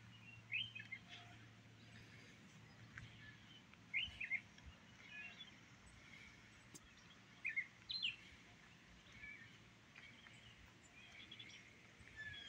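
Faint birds chirping in short quick groups of two or three notes, about every three to four seconds, over a low steady background hum.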